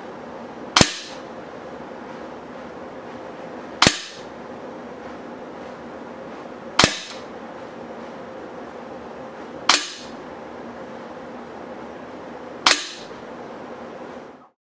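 Five shots from an RWS LP8 .177 break-barrel spring-piston air pistol, each a sharp crack about three seconds apart, over a steady faint background hiss.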